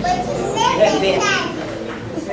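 A child's high-pitched voice, loudest in the first second and a half and fading after.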